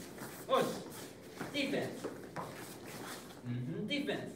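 Speech: a voice calling out short words about a second apart, in the rhythm of called drill commands.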